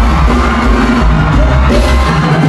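Loud live band music in the Isan toei style, with a heavy bass.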